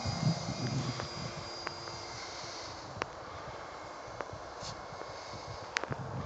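Radio-controlled E-flite de Havilland Beaver scale plane's electric motor and propeller, a steady high whine that fades away within the first few seconds as the plane climbs off. A few sharp clicks near the end.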